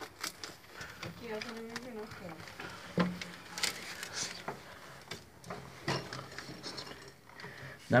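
Scattered knocks, scrapes and clothing rustle from people clambering through a concrete bunker entrance while a phone is handled, with a faint voice about a second in.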